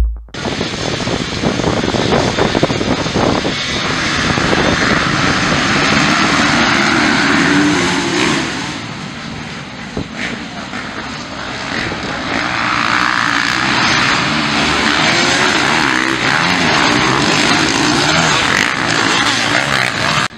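Several motocross dirt bikes racing on a dirt track, their engines revving hard and changing pitch as riders accelerate and shift, swelling louder as the bikes pass close.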